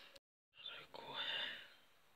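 A brief dead silence at an edit cut, then a person whispering softly.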